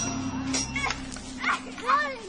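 Children's voices calling and shouting in short rising-and-falling cries, over a held low music note that fades out about a second in.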